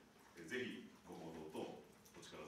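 Speech only: a person speaking into a microphone.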